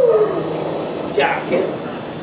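Belgian Malinois whining: a high, drawn-out whine falls away at the start, then a short yip comes about a second in.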